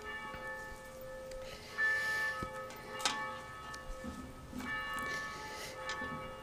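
Soft bell-like instrumental music: held, chiming notes that ring on, with new notes struck about two seconds in and again near five seconds.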